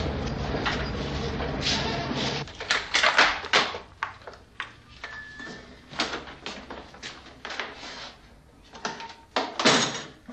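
A steady low street rumble that cuts off after a couple of seconds, followed by a string of sharp, uneven knocks and clicks in a small room: a door and footsteps.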